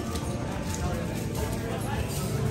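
Café background sound: indistinct voices and background music, with a few light clicks and clatters.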